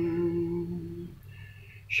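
Unaccompanied male voice holding the last sung note of 'vatan' at a steady pitch, hummed on the closing 'n' and fading out about a second in. A short pause follows, and the next line starts right at the end.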